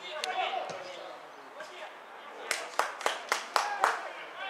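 A person clapping hands quickly, about six sharp claps at roughly four a second in the second half, after shouts from the pitch.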